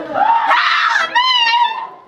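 High-pitched screaming from people frightened in a haunted house, in two long shrieks that fade near the end.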